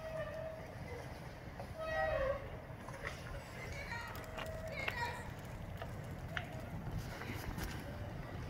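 Faint, indistinct voices in short snatches over a steady low rumble.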